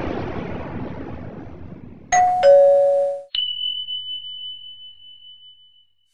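Intro sound effects: the tail of a booming hit fades out, then a two-note falling ding-dong chime sounds about two seconds in, followed by a thin high tone that rings on and slowly fades.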